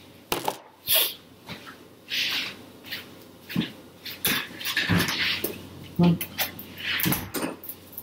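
A pet dog being let in through a door: a series of short, scattered scuffling and jingling noises as it moves about, with a few soft thumps.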